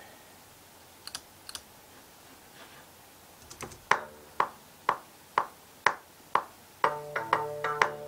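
Playback of a work-in-progress music track from a recording program through studio monitors. After a quiet start with two faint clicks, a steady beat of short, sharp ticks about twice a second begins, and sustained low notes join about a second before the end.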